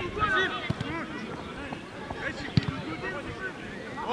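Distant shouting and calling of players and spectators around a grass football pitch, with a couple of short thumps, one under a second in and one past halfway.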